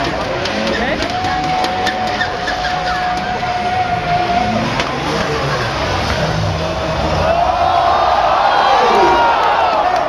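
Drift cars' engines running at high revs in a tandem drift: one engine note held steady for a few seconds, then several notes rising and falling together near the end as the cars pass.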